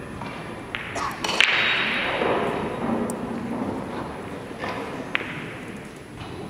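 A few sharp knocks about a second in, the loudest followed by a second or so of rushing noise, then a single sharp click a little after five seconds, in a large echoing hall.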